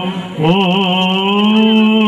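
A male voice chanting in Byzantine style, holding long notes with small ornamental wavers. It breaks off for a breath at the start, then swoops up into a new note and holds it.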